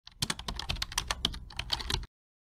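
Rapid computer keyboard typing, a quick run of key clicks at about ten a second, stopping abruptly at the end.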